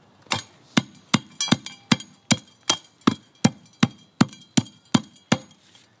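Hand tamper with a flat steel plate pounding the soil at the bottom of a footing hole, about fourteen sharp, evenly spaced blows at roughly two and a half a second. The strokes are compacting the hole's base firm and flat so the pier block set on it will not settle.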